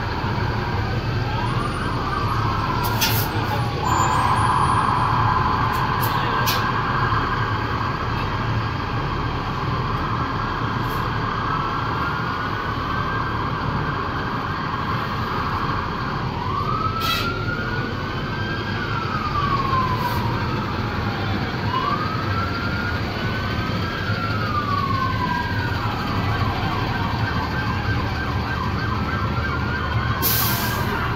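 Emergency-vehicle sirens sounding on passing Guardia Nacional trucks: several overlapping sirens, a fast warble for the first part, then slower rising-and-falling wails. A truck engine runs steadily underneath.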